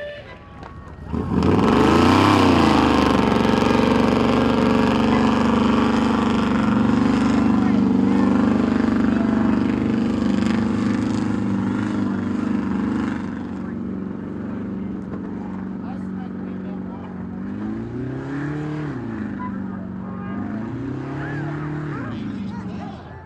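Off-road vehicle engine revving hard under load in a sand pull. It climbs to high revs about a second in and holds steady, then eases off and surges up and down twice near the end.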